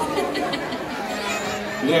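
Audience chattering and calling out in a large hall, many voices overlapping.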